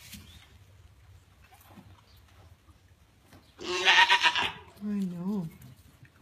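African pygmy goat bleating: one loud, quavering bleat about three and a half seconds in, then a shorter, lower, wavering call about a second later.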